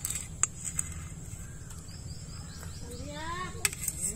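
A steel spoon clinking a few times against a steel bowl and plate while syrupy gulab jamun are served out, the loudest click near the end, over a faint steady high whine and light chirping in the background.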